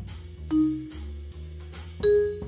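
Jazz piano played on a digital keyboard, a solo line with a louder ringing note about half a second in and another at the end, over a walking bass line and a steady ticking drum accompaniment.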